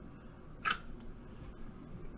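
A single sharp click about two-thirds of a second in: the black reset button on top of the Meca500 robot arm's power block being pressed.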